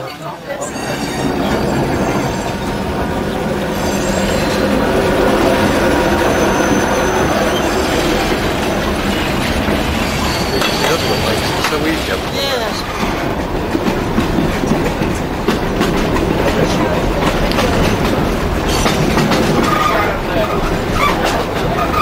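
Vintage wooden-bodied passenger train of the Sóller railway running along the track: steady rumble and clatter of wheels on rails, with thin high wheel squeals at times. It grows louder over the first two seconds as the train gathers speed.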